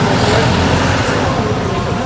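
Steady road traffic noise from a busy street.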